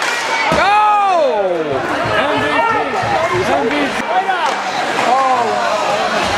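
Spectators at an ice hockey rink shouting and calling out over one another, with a long rising-then-falling yell about a second in.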